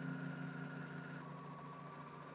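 Juki serger (overlock sewing machine) running with a steady hum, growing slightly quieter.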